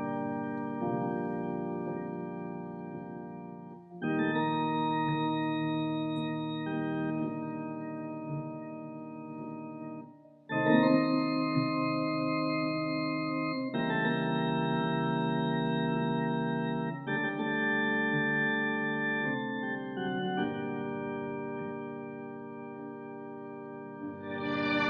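Organ music of slow, long-held chords, each sustained for a few seconds before moving to the next, with a short break before a fresh chord about ten seconds in.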